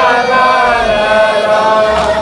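A voice chanting a Shia devotional chant in long, wavering held notes.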